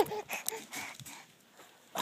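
Faint rubbing and clicks from a phone being handled by a baby, with a few small baby vocal sounds in the first second, then near silence from about halfway through.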